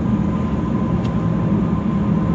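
Steady low rumble of a car's engine and tyres on the road, heard from inside the cabin while driving, with a faint steady high tone running under it.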